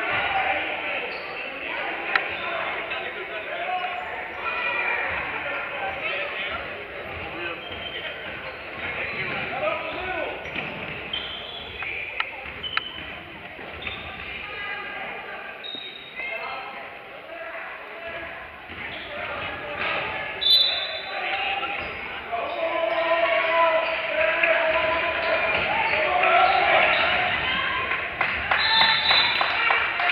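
Basketball bouncing on a hardwood gym court, with sharp knocks and a brief high tone about two-thirds through, under the voices of players and spectators in a large echoing gym.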